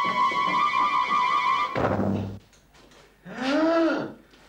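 Dramatic background music: a sustained high note is held, then cut off by a single deep drum hit a little under two seconds in. After a short quiet gap, a voice cries out briefly near the end.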